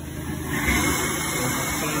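Hot-water carpet extractor (steam-cleaning) wand drawn across carpet, its vacuum suction making a steady rushing noise that comes up about half a second in.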